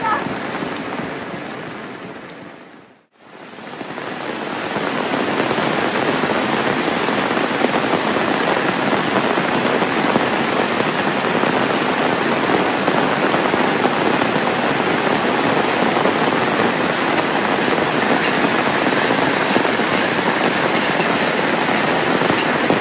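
Heavy rain falling steadily. About three seconds in, the sound fades out to silence and then fades back in, and it holds steady from then on.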